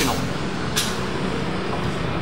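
Steady low engine rumble of street traffic, with a short sharp hiss a little under a second in.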